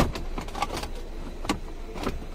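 Hard plastic centre-console trim around a gear-lever boot being worked loose by hand: scattered clicks and knocks, with a sharp click at the start and another about a second and a half in.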